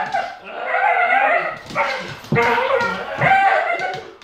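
Bull terrier making weird vocal noises while tugging on a toy: a string of about four drawn-out, wavering cries with short breaks between them.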